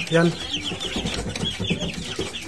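Half-grown chicks peeping: a rapid run of short, high peeps, several a second.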